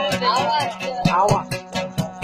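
A Sasak gambus (pear-shaped lute) being plucked in quick, repeated strokes, while a man sings a wavering, ornamented melody over it. The singing trails off about two-thirds of the way in, and the plucking carries on.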